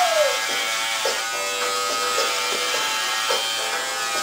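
Electric hair clippers buzzing steadily as they are run over a head of short hair, with a brief drop in pitch right at the start.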